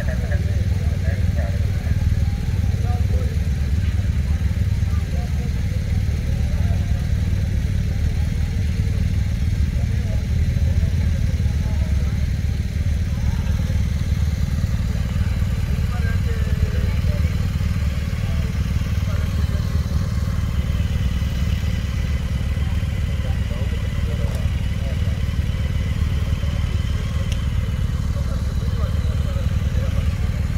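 BMW GS motorcycle's boxer-twin engine idling with a steady low rumble, with faint voices of people around it.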